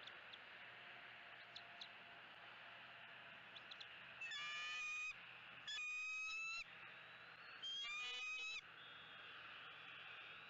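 Three loud, pitched bird calls at a bald eagle nest, each about a second long, coming about four, six and eight seconds in, over a steady outdoor hiss.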